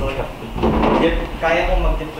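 Indistinct voices talking in a room, over low rumbling and thudding, like handling or movement knocks.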